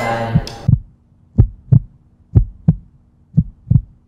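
Heartbeat sound effect: three lub-dub double thumps about a second apart, over a faint steady hum.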